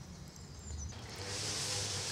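Faint outdoor quiet, then about halfway through a string trimmer (strimmer) comes in, running steadily in the background as a faint steady whine with a high hiss.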